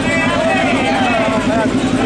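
Motorcycle engines idling steadily with an even low pulse, under the chatter of a crowd.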